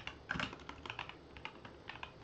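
Typing on a computer keyboard: a quick, irregular run of soft key clicks as a short word is entered in pinyin.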